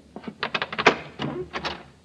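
Radio-drama sound effect of a door being unlocked and opened: a rapid run of sharp clicks and knocks.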